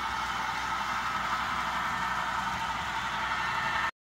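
Steady machine-like hum with hiss, with no change until it cuts off suddenly near the end.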